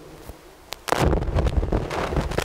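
Low, irregular rumbling buffeting the microphone, like wind on the mic, starting about a second in. A single faint click comes just before it.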